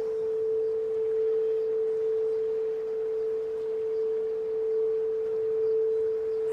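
A frosted crystal singing bowl played by circling a mallet around its rim, giving one sustained pure tone a little under 500 Hz that swells gently in loudness.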